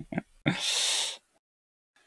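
A man laughing: two short voiced chuckles, then a loud breathy burst of laughter about half a second in that lasts under a second.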